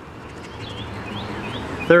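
A Chuck E. Cheese token scraping the coating off a scratch-off lottery ticket, a steady scratchy rasp that grows slightly louder, with a few faint bird chirps behind it.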